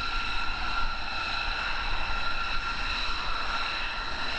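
B-2 Spirit stealth bomber's turbofan engines running while it taxis: a steady jet whine, several high tones held over a rushing hiss.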